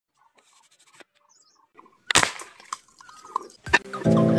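Homemade wooden slingshot gun fired: one sharp snap about two seconds in that dies away, followed by a few lighter clicks and another sharp click near the end.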